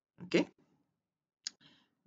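A man's brief spoken 'okay', then about a second later a single sharp click.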